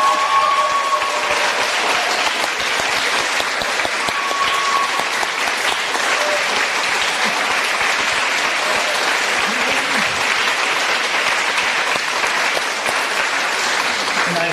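Audience applauding steadily, with a few voices calling out among the clapping near the start.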